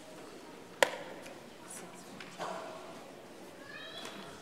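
A single sharp knock about a second in, ringing on in the large, echoing church, over the low murmur of a seated congregation; brief voices near the end.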